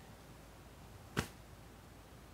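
Quiet room tone broken by one short, sharp click-like sound just over a second in.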